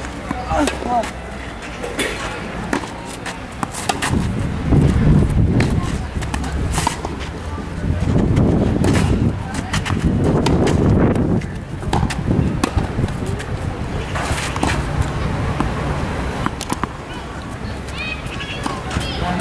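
Tennis balls struck by racquets in a clay-court rally: sharp hits every second or two, with stretches of low rumbling noise between them.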